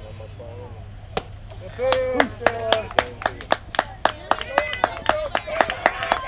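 A single sharp crack of a softball bat meeting the ball about a second in, followed by shouting and fast, uneven clapping from players and spectators.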